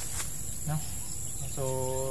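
Insects in the waterside vegetation keeping up a steady, high-pitched chirring trill without a break.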